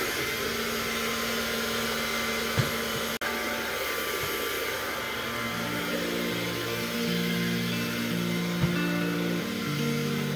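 Cordless stick vacuum cleaner running steadily, with two short knocks, about two and a half and eight and a half seconds in. Background music with a plucked melody fades in about halfway through.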